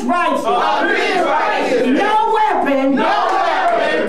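A congregation reciting scripture aloud in unison, many raised voices speaking together with overlapping words and no clear pauses.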